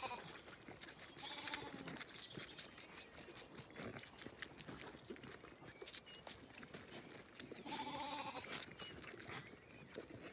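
Zwartbles lambs bleating twice, once about a second in and again near the end, over quick soft clicks and sucking noises as they suckle at feeding bottles.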